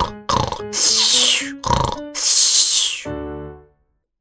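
Cartoon snoring sound effect over a few short musical notes: two long hissing breaths, then a low buzzing snore near the end that cuts off.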